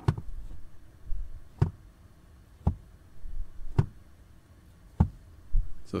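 Five sharp plastic knocks, each with a low thud, about a second apart, as the HVAC blend door behind the dash is turned back and forth by hand and knocks against its stops.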